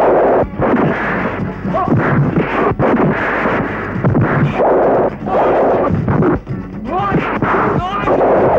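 Dubbed film-fight punch sound effects: a run of heavy, sharp whacks about one a second, over background music.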